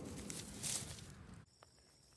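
Dry grass and pine needles rustling as a hand moves through them, with a louder rustle a little under a second in. About a second and a half in the sound cuts off abruptly to a much quieter background with faint ticks.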